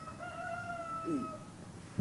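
A rooster crowing once, faintly: one drawn-out call of about a second and a half that sags slightly in pitch toward the end.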